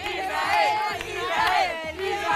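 A group of people shouting and cheering at once, many voices overlapping.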